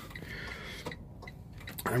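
Steady low rumble inside a parked semi-truck's cab, with a few faint clicks.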